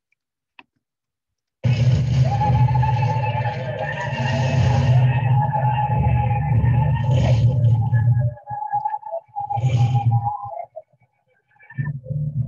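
Film soundtrack playing from the computer: a mouse click, then about a second and a half in, loud music with a heavy low rumble and a held mid tone. It breaks up and nearly drops out shortly before the end.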